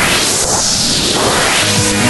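Electronic dance track intro: a loud, sweeping whoosh of noise, with steady synth and bass notes of the beat coming in near the end.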